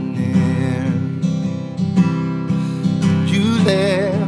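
Acoustic guitar strummed steadily, with a man singing a held, wavering note near the end.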